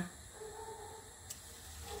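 Hot sunflower oil sizzling faintly in a frying pan. A faint held tone comes twice, and a single click falls in the middle.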